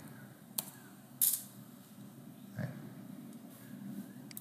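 Quiet room tone broken by one sharp click about half a second in, a key press or mouse click on the computer. A short hiss follows just after a second, and a softer noise a little past halfway.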